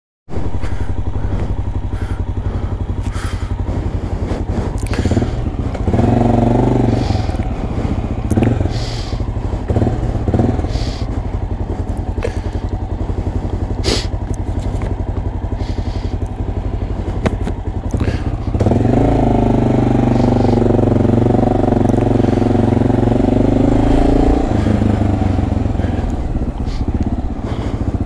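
Honda dual-sport motorcycle engine running throughout. The engine note swells louder about six seconds in and again for several seconds past the middle as the bike is ridden, with a few sharp knocks along the way.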